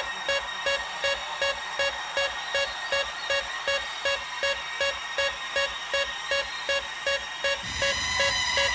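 Electronic dance music from a club DJ mix, in a breakdown: a short synth note repeats evenly about two and a half times a second with no kick drum. Bass starts to swell back in near the end.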